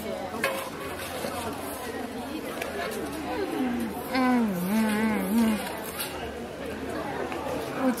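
Background chatter of people talking, with one voice heard clearly for a second or two about halfway through.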